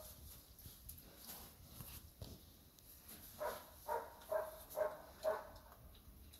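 Five short animal calls in quick succession, about two a second, starting a little past halfway.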